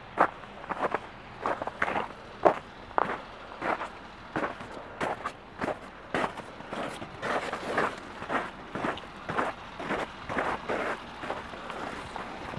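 Footsteps crunching on icy, packed snow, an irregular run of short, sharp steps about two a second.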